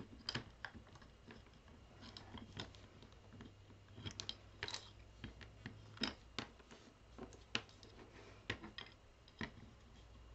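Faint, irregular clicks and taps of a small bamboo wood bookend and its black metal wire frame being handled and fitted together.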